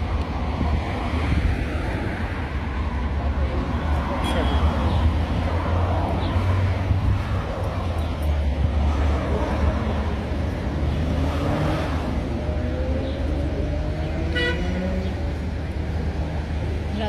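City street traffic noise: vehicles running past over a steady low rumble, with some pitch sliding up and down as they pass.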